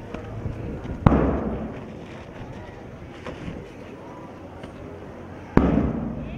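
Two loud sharp bangs, about a second in and near the end, each followed by a short rumbling fade, with a few fainter clicks between.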